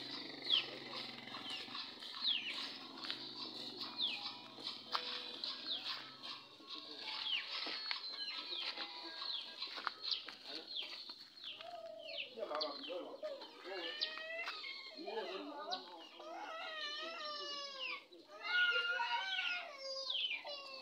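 A bird repeats a short, high chirp that falls in pitch, about once a second, for roughly the first ten seconds. From about twelve seconds in, people's voices take over.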